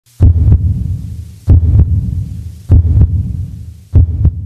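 Loud, deep heartbeat sound effect: a slow lub-dub of double thumps, four beats about a second and a quarter apart, each dying away before the next.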